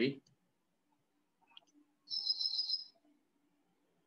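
One short, high chirping call about two seconds in, like a bird call, made of two high notes held together with a fine trill, over a faint low hum.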